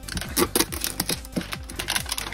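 Plastic shrink-wrap crinkling and crackling as fingers tear it and peel it off a metal tin, a quick irregular run of small crackles and clicks.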